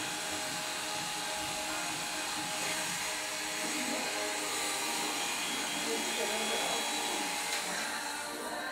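Corded electric hair clippers running steadily while cutting hair short; the motor noise drops away at the end.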